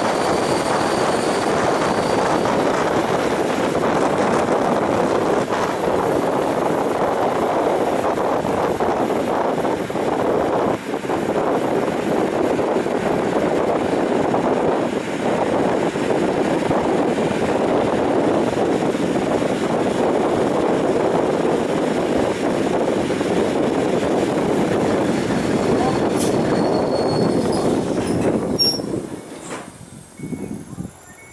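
EN57 electric multiple unit running along the line, heard on board: a steady, loud rumble of wheels on rail and running gear. It falls away sharply about two seconds before the end.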